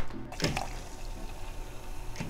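Red sangria pouring from a self-serve draft tap into a plastic cup: a steady, faint hiss of running liquid, following a short knock about half a second in.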